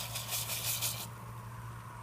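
Pot of water and rice simmering on a stovetop: a soft, crackly bubbling hiss that fades out about a second in, over a steady low hum.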